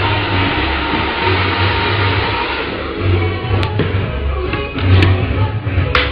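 Background music with a pulsing bass beat over a steady rushing noise, with a couple of sharp clicks in the second half.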